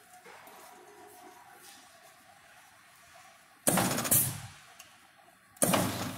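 Mechanical punch press making a single stroke, cycled from its two-hand palm buttons: after a few quiet seconds, two sudden loud bursts of machine noise about two seconds apart, the first dying away within a second.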